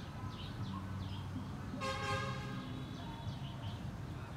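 A vehicle horn gives a single short toot, lasting under a second, about halfway through. A steady low rumble of background traffic runs underneath it.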